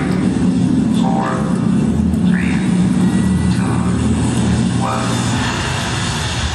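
Dance-performance soundtrack played over a PA: a dense low rumbling drone with short rising swooping sounds recurring every second or so, a sound-effect passage between musical sections.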